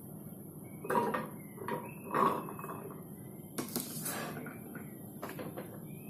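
Pomegranate seeds dropped by the handful into the plastic jar of an Usha food processor, landing in several short, irregular rattling bursts.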